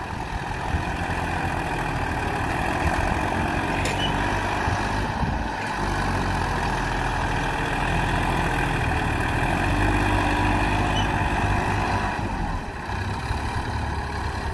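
Massey Ferguson 241 DI tractor's three-cylinder diesel engine running hard under load as the tractor, hitched to a soil-laden trolley, struggles in soft sand. The engine note swells a little around ten seconds in and dips briefly near the end.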